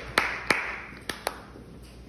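Audience applause dying away, ending in a few last scattered claps.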